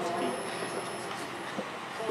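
Faint room tone in a pause between amplified speech: a low steady hiss, slowly fading, with a thin high whine.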